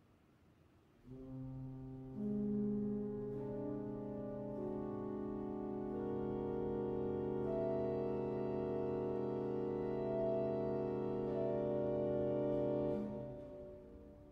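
Pipe organ playing a slow passage of long held chords. The first chord enters about a second in and more notes join over the next few seconds. The chord is released near the end with a short reverberant decay.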